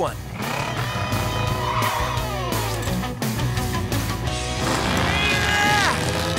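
Upbeat cartoon background music with a cartoon monster-truck engine sound effect revving as the truck stretches a bungee cord, its pitch gliding up and down.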